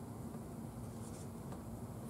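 Quiet room tone with faint rustling of thin Bible pages being handled.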